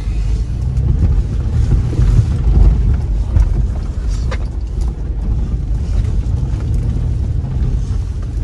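Car cabin noise while driving over a wet, potholed dirt road: a steady low rumble from the engine and tyres, with an occasional light knock.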